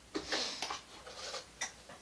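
A plastic lid being pried off a small can, giving a few light, separate clicks and a short rustle as it comes free and the can is handled.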